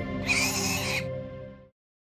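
Background music with a short breathy laugh over it, both cutting off abruptly to silence shortly before the end.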